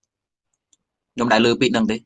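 Dead silence for about a second, broken only by one faint click, then a man's voice resumes speaking in Khmer.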